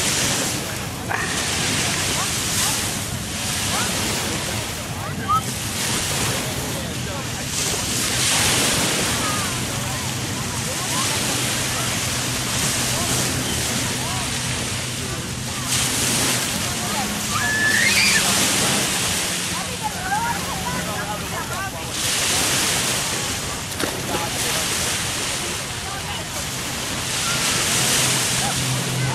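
Small surf breaking on a sandy beach: a steady wash of waves that swells and eases every several seconds, with faint distant voices.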